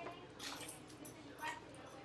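Faint, indistinct speech, with two short noisy sounds, one about half a second in and one near the end.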